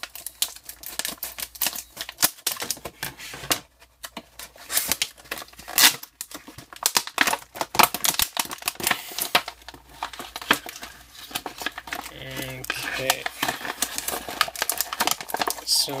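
Stiff clear plastic clamshell packaging being pried and pulled apart by hand, crackling and crinkling with many sharp irregular clicks and snaps.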